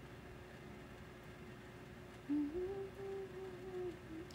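Quiet room tone for about two seconds, then a woman hums with her mouth closed: a low note that steps up and is held for about a second and a half, ending just before the end.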